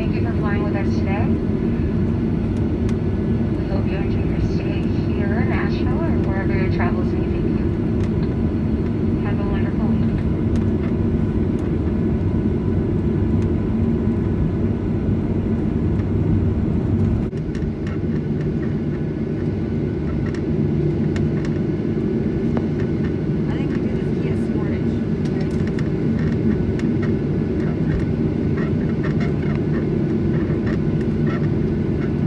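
Steady jet engine and cabin drone inside an airliner taxiing, with faint voices over it in the first ten seconds. About seventeen seconds in, the sound cuts abruptly to a slightly quieter but similar cabin drone.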